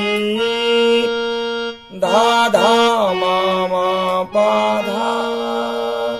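Electronic keyboard in a harmonium-like reed voice playing sustained notes of a slow melody while a man sings the phrase along with it. The sound drops out briefly just before the middle.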